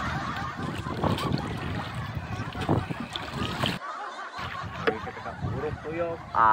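Water sloshing and wind noise around a small paddled outrigger boat, with occasional knocks and splashes from the wooden paddle. The sound drops out briefly about four seconds in.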